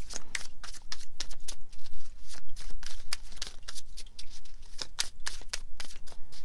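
A tarot deck shuffled by hand: a quick, irregular run of light card snaps and slaps.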